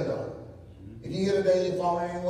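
A man's voice preaching, with a short pause about half a second in before the voice returns on drawn-out, held words.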